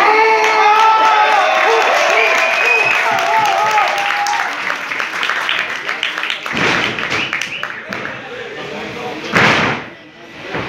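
Spectators shouting at a wrestling ring, then a run of sharp smacks. A heavy thud on the wrestling ring near the end is the loudest sound.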